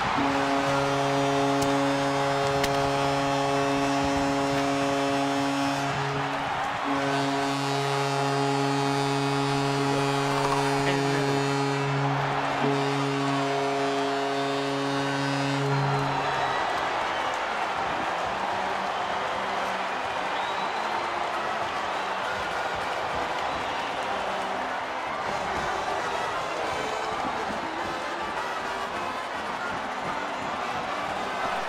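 Arena goal horn sounding three long, steady blasts over a cheering crowd, signalling a goal; the horn stops about sixteen seconds in and the crowd cheering goes on.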